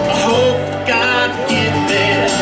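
Live roots-country band playing: plucked string instruments over an upright bass and a drum kit.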